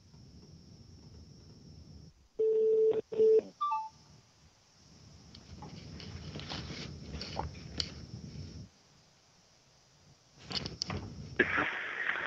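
Telephone line during a pause on hold: faint line hiss, then a steady electronic tone about two and a half seconds in, broken once and lasting about a second, followed by a quick pair of higher beeps. Muffled background noise follows for a few seconds, then clicks near the end as the line is picked back up.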